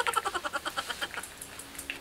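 A rapid, rattling pulse effect, about fifteen pulses a second, that fades away over a second and a half.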